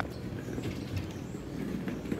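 Steady low rumble of city street noise, traffic-like, with no clear single event.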